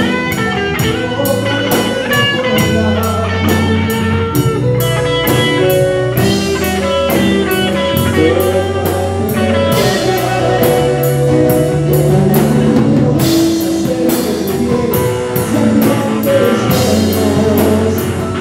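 Live band playing an instrumental passage: drum kit keeping a steady beat with regular cymbal strikes under electric guitar and sustained keyboard and bass notes.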